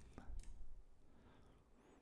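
Quiet room tone with a few soft clicks, typical of a computer mouse as a video is scrubbed back.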